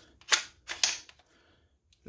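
Two sharp metallic clicks, about half a second apart, of a B&T APC9's takedown pins being pressed home to lock the lower receiver to the upper.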